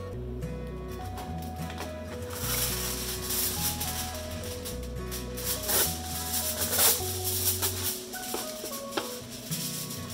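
Background music with a simple melody over a bass line. From about two seconds in, aluminum foil rustles and crinkles as it is pulled off the roll, with a couple of sharper crackles near the middle.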